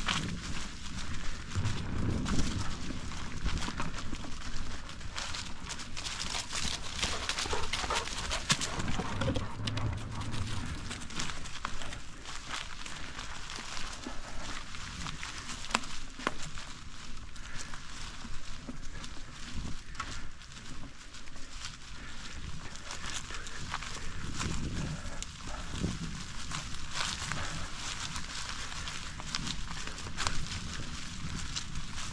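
Bicycle tyres rolling over a trail thick with dry fallen leaves, a continuous crunching crackle of many small ticks.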